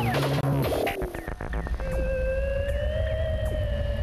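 Electronic theme music for TV opening titles. It begins busy, with a falling glide in the first second, then a quick rattle of clicks. From about two seconds in it settles into a long held electronic tone over a low hum, with a few short falling zaps.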